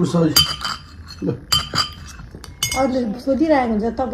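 Metal spoon and fork clinking and scraping against ceramic plates, several sharp ringing clinks in the first two and a half seconds. A voice comes in near the end.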